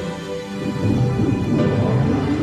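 Dramatic film-score music; about half a second in, a loud low rumble swells in under it and becomes the loudest sound.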